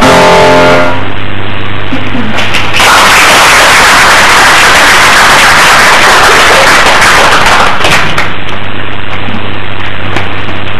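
A grand piano's final chord rings out and dies away about a second in. About three seconds in, the audience breaks into applause, which lasts about five seconds and then fades.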